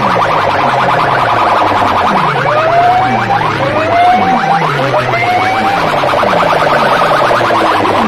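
Electronic competition track blasted through banks of metal horn loudspeakers: siren-like rising sweeps repeat about once a second over a rapid buzzing pulse.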